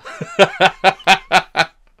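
A man laughing: a quick run of about six short laughs that stops shortly before the end.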